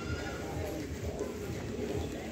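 A bird cooing in low, repeated calls, over background voices.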